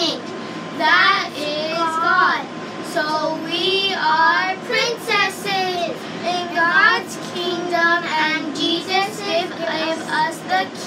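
Young girls singing, their voices wavering on held notes.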